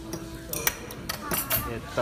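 Metal cutlery clinking against ceramic bowls and glassware at a dinner table: a handful of short, sharp clinks about half a second to a second and a half in.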